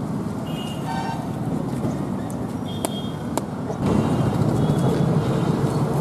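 Steady outdoor noise of road traffic, with a short toot about a second in and two sharp clicks around three seconds in. The noise gets louder about four seconds in.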